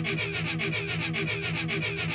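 Background music: a fast, evenly repeated figure over a steady held low note.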